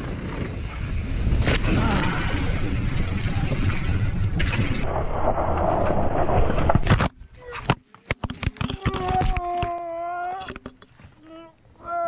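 Mountain bike ridden fast downhill, with steady rushing wind noise on the helmet camera and tyres on dirt. About seven seconds in, a crash into a tree cuts this off with sharp knocks and rattles. Then comes a winded rider's strained, held groan.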